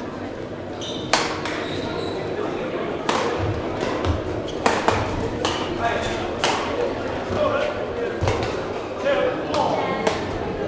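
Badminton rackets striking a shuttlecock in a rally: a string of sharp hits roughly one to two seconds apart, echoing in a large hall.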